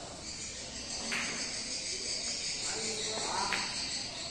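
Carom billiard balls clicking on a shot: one sharp click about a second in and another about three and a half seconds in. A steady high chirring runs underneath.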